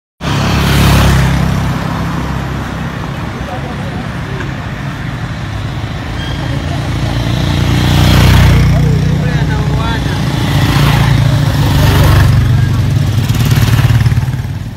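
Street traffic on a paved road: motorcycles and cars passing, their noise swelling three times and fading, over a steady low rumble, with faint voices in the background.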